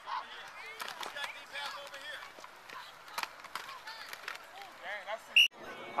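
Distant voices of players and coaches calling across a football field, with scattered sharp knocks of pads and helmets colliding as a play runs from the snap. A brief high whistle sounds just before the sound cuts off near the end.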